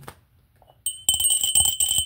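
Near silence, then about a second in a small clear-glass hand bell is rung: a high, steady ring with repeated clapper strikes.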